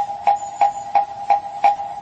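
Background music: a woodblock-like knock repeated evenly about three times a second over a steady held tone.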